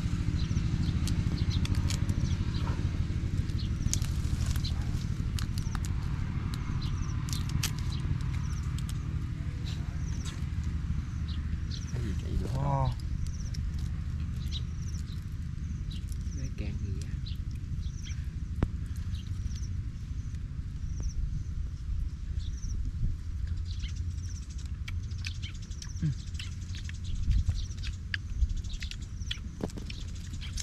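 Wind rumbling on the microphone, with scattered small clicks and cracks of grilled shrimp and clam shells being picked apart and peeled by hand.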